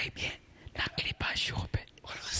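Speech only: a person talking in short broken phrases.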